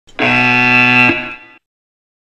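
Electronic buzzer tone from a Yo-Yo test audio track, sounding once for about a second, then a short fading tail. It signals that the 20 m shuttle run is finished and the recovery period begins.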